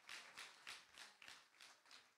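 Faint, evenly spaced taps, about three to four a second, dying away toward the end.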